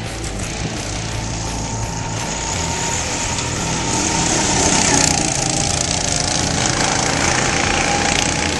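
Small go-kart engines running as several karts race around the track, growing louder about halfway through as the karts pass close by.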